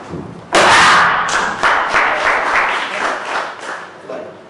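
Applause, many hands clapping, breaking out about half a second in and tapering off over about three seconds.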